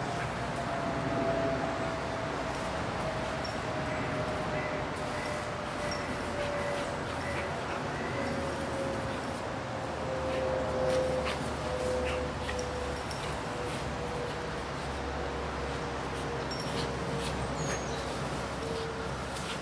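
Dog sounds over a steady background hiss, with a few short clicks. A single faint tone slides slowly down in pitch.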